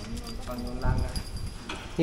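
Voices talking quietly, with a dull knock about a second in and a few light clicks.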